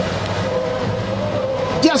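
Steady background machine hum with several held tones running through a pause in talk, with a man's voice starting again at the very end.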